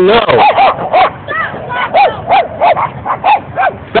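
Small chihuahua barking rapidly at a rabbit it is chasing, a run of high, sharp yaps about three a second.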